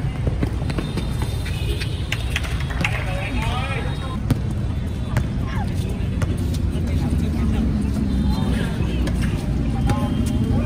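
Outdoor basketball game: shouts and chatter from players and spectators, with a few short knocks of the ball and feet on the concrete court, over a steady low rumble.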